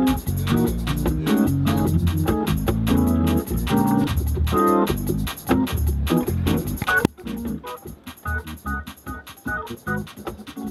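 Hammond console organ played in gospel style with full chords and heavy bass, over a fast, steady ticking beat of about four to five ticks a second. About seven seconds in, the heavy low notes cut off suddenly and lighter, higher chords carry on over the ticking.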